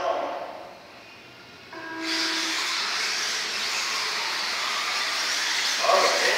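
A short low tone, then from about two seconds in a steady, even hiss that holds at one level.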